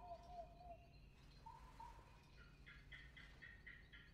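Near silence: quiet room tone with faint bird chirps, including a quick series of short notes in the second half.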